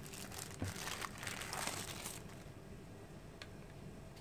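Clear plastic packaging bag crinkling as it is handled for about two seconds, with a single knock about half a second in. A few small clicks follow near the end.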